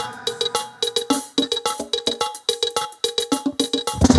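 Live calypso band playing a percussion-led intro: a quick, steady beat of sharp, bright strikes with light drums and hardly any bass.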